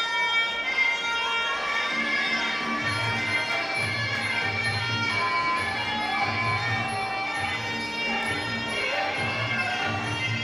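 Traditional Muay Thai fight music (sarama): a reedy pi oboe plays a sustained, wavering melody over a light cymbal tick that repeats evenly. A steady drum beat joins about three seconds in.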